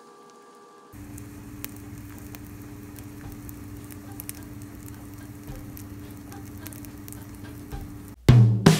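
Mushroom slices frying in oil in a cast-iron skillet: a steady sizzle with scattered pops and crackles, starting about a second in, over a steady low hum.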